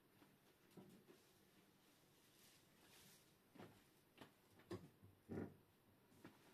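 Near silence with room tone, broken by a few faint scattered knocks and thumps, the last a little louder, from someone moving about out of sight.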